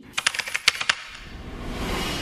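A quick run of about eight sharp clicks within the first second, then a rush of noise that swells toward the end.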